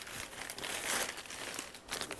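Plastic shipping mailer bag crinkling irregularly as it is handled and lifted.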